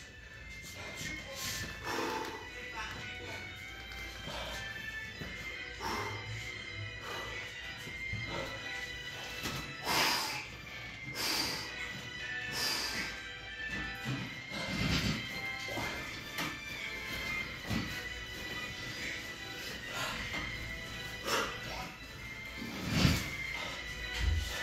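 Music and speech from a video playing in the background, with three sharp knocks about a second apart near the middle as pull-ups are done on a power rack's bar.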